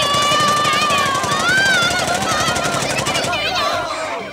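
Cartoon machine-gun sound effect firing one long rapid burst, with a character's high, wavering yell held over it; both stop about three seconds in.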